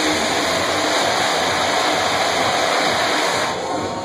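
Stage CO2 jet cannons blasting, a loud steady hiss that stops about three and a half seconds in.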